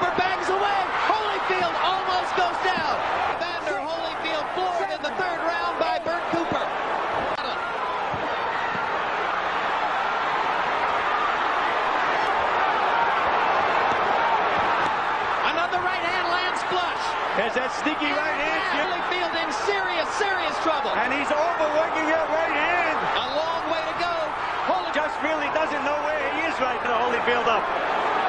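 Arena crowd shouting and roaring steadily during a close-range boxing exchange, with scattered dull thuds of punches landing.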